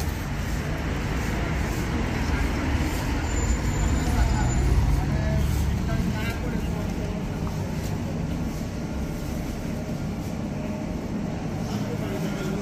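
Road traffic on a busy town street: vehicle engines and tyres rumbling low and steady, loudest about four to five seconds in, then easing a little.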